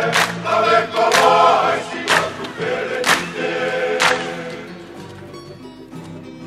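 Kava-club group of men singing together in full voice, a Tongan kalapu song. The sung phrase dies away about four seconds in, leaving quieter accompaniment.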